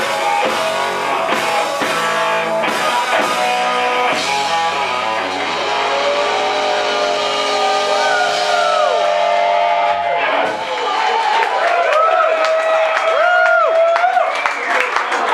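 Live rock band playing electric guitar, bass and drums. Drums beat for the first few seconds, then held chords carry bending guitar notes. About ten seconds in the bass and drums drop out, leaving guitar notes bending over a sustained tone as the song winds down.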